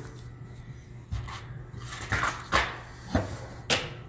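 Several short clicks and light knocks, about five spread over a few seconds, the sharpest near the end, from hands handling an open laptop's plastic chassis and its battery.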